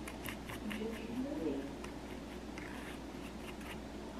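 Small plastic spoon stirring dough in a Popin' Cookin kit's plastic tray: a run of light scrapes and clicks as the spoon works against the tray.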